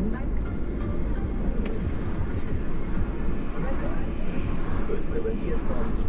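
Steady low road and engine rumble inside a moving car's cabin, with a radio presenter's voice faintly over it.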